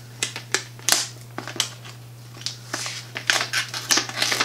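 Sheet of holographic heat-transfer (iron-on) vinyl crinkling and crackling in irregular bursts as it is peeled up off a sticky cutting mat.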